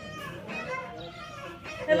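Background chatter of voices, children playing and talking, with close speech starting at the very end.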